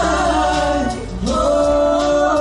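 Three male pop singers singing a ballad live in vocal harmony, their voices dipping briefly about a second in and then holding a sustained chord.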